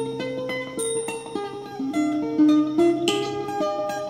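Mandolin picking a melody of single plucked notes in quick succession, with a low held note underneath.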